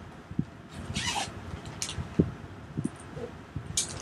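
Handling noise from packing a soft carry-on suitcase: scattered light knocks and bumps, with short rustles about a second in and near the end.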